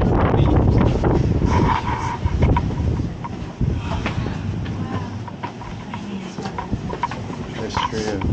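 Indistinct voices of people close by, with scattered clicks and knocks and a heavy low rumble of handling or wind noise on the microphone.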